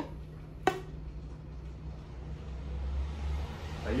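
A cloth patch being pulled through an air rifle barrel on a line, with one sharp click about two-thirds of a second in, over a steady low hum.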